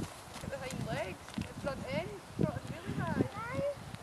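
A pony trotting on a soft arena surface: its hoofbeats come as a run of dull thuds, with high gliding calls heard over them.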